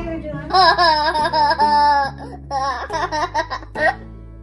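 A young child laughing in high, wavering peals, loudest through the first half, over soft background music.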